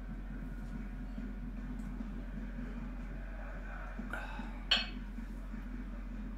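A single short, sharp clink about three-quarters of the way through, over a steady low hum.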